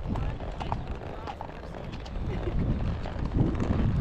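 A horse's hooves clip-clopping on a gravel track, heard from the saddle, with the rider's movement rumbling on the microphone.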